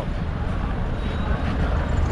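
Busy street ambience: a steady low rumble of slow traffic, with the murmur of a crowd's voices.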